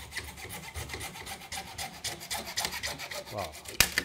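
Magic Saw hand saw rasping back and forth in rapid strokes, cutting through wood, aluminum and PVC pipe clamped together in a vise. A single sharp knock comes near the end.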